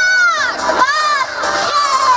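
A young woman's high-pitched, drawn-out shouts into a stage microphone, amplified: two rising-and-falling calls, then a third that slides downward near the end, in a break between sung passages.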